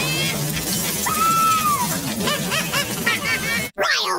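Heavily distorted commercial soundtrack: a loud noisy wash with a single rising-then-falling cry about a second in, then voices. It drops out briefly near the end.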